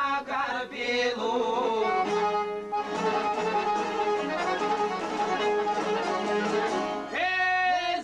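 Albanian folk song: singing over instrumental accompaniment, giving way about two seconds in to an instrumental passage over a steady drone, with the voice coming back in about a second before the end.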